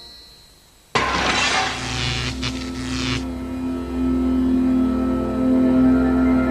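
Music fading almost to quiet, then about a second in a sudden noisy whoosh-and-crash sound effect starts over held music tones. The effect dies away about three seconds in, leaving the steady music of a programme link.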